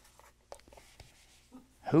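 Dry-erase marker on a whiteboard: a few short, scattered squeaks and taps of marker strokes. A man's voice comes in near the end.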